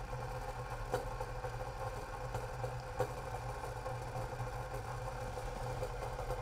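Steady low hum with two faint ticks, from water heating in a metal jug on a hot plate, close to the boil.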